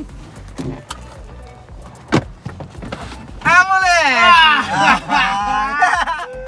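A few sharp clicks as a Fiat Toro's front seat cushion is unlatched and lifted to reveal a hidden storage compartment. About three and a half seconds in, the men break into loud, drawn-out excited exclamations, with background music throughout.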